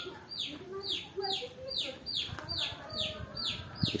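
Quiet village background: chickens clucking softly, with a high, falling chirp repeating evenly about two or three times a second.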